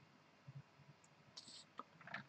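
Near silence: room tone with a few faint clicks and a brief soft hiss about a second and a half in.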